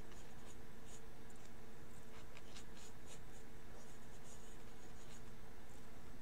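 Drawing instrument scratching on paper in short, faint sketching strokes, over a steady low hum.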